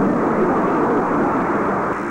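A studio audience laughing and applauding, a steady dense wash of noise, in reaction to the sketch's punchline.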